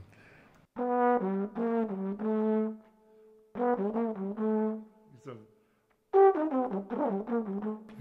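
Solo trombone playing short jazz phrases, a descending line down the triad, in three runs of a few notes each with brief pauses between.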